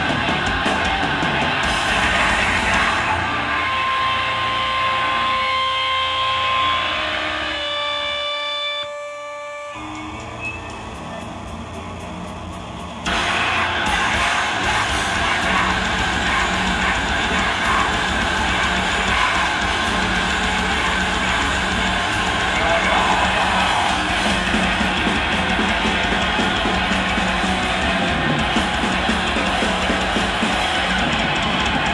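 Live heavy metal band playing loud: distorted electric guitar, drum kit and yelled vocals. About three seconds in the band thins out to held, steady guitar tones and feedback over amp noise, and around thirteen seconds the full band comes back in at once.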